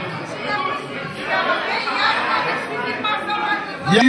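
Many people talking at once in a large hall: crowd chatter with no single voice standing out.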